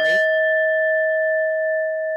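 A single bell-like chime struck once and left ringing, a clear tone with a few fainter higher overtones that slowly fades. It sounds as the meeting timer runs out, signalling that the speaker's time is up.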